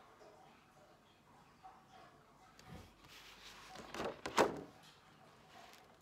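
Quiet room with a few soft knocks and handling noises, including a dull thud a little before three seconds in and two short, sharper clicks or scrapes about four seconds in.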